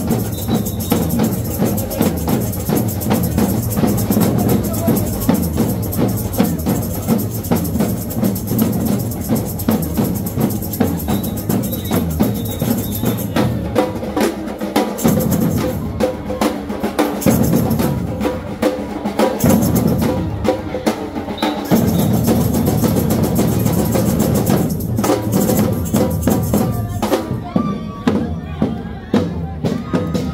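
Samba drum troupe (batucada) playing a fast, dense rhythm on large bass drums and snare drums. The bass drums drop out for short breaks several times midway through.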